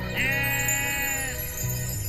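A sheep bleating once, a single call of about a second, over background music.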